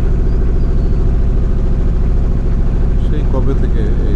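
A boat's engine running steadily while the boat moves along the river, a loud, even low drone. A man's voice speaks briefly near the end.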